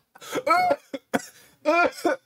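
A man laughing hard in several short bursts, the first the longest, with a coughing edge to some of them.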